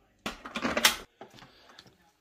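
A metal spoon clattering and scraping against a plastic tub of frozen yoghurt, a short burst in the first second, followed by a few faint ticks.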